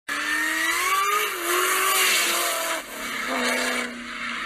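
A car accelerating hard toward and past the roadside, its engine note climbing through the first second, loudest as it goes by about two seconds in, then falling away.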